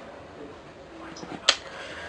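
Handling noise from a hand-held camera: a single sharp click about one and a half seconds in, over quiet room noise.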